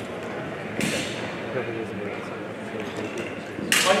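Murmur of voices in a large hall, with a sharp clack about a second in and a louder one near the end.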